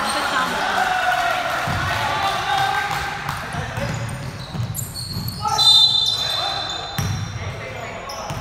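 Basketball game in a large echoing gym: a ball bouncing on the hardwood floor in repeated thuds, with players' voices calling out. A brief high squeak comes a little past the middle and is the loudest moment.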